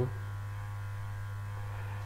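Steady low electrical hum with nothing else over it: the background hum of the voice-over recording.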